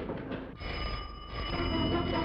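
Telephone bell ringing, starting about half a second in.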